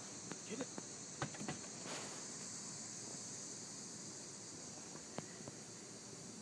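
Steady high-pitched chirring of crickets. A few short, light taps come in the first second and a half, with one more about five seconds in.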